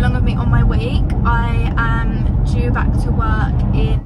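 A woman talking inside a moving car's cabin, over steady low road and engine rumble.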